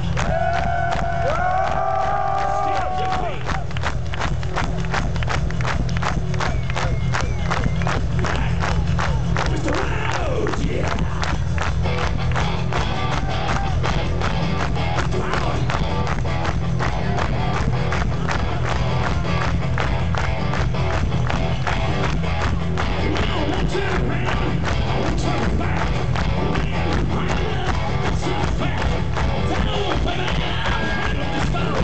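Hard rock band playing live through a large PA, with a crowd shouting along. A held note opens, then a fast, steady drum beat drives on with a heavy, distorted low end.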